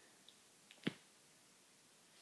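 A single finger snap a little under a second in, sharp and brief, preceded by a couple of faint ticks.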